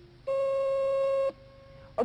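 Game-show electronic buzzer: one steady beep lasting about a second, starting and stopping abruptly, that marks the contestant's answer time running out.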